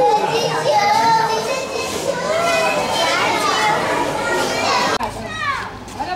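A crowd of young children chattering and calling out at once, many high voices overlapping. The chatter breaks off abruptly about five seconds in, giving way to quieter sound.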